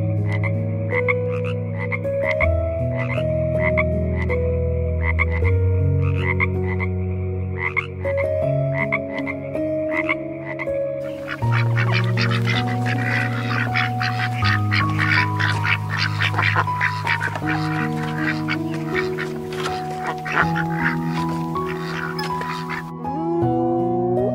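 A frog calling in a steady series of short croaks, about three every two seconds, for the first half. Then a flock of domestic ducks quacking densely together until just before the end, when a short rising call comes in. Soft background music plays underneath throughout.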